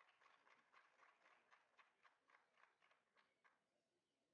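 Near silence: faint outdoor ambience with a run of soft ticks, about three or four a second, that fade out near the end.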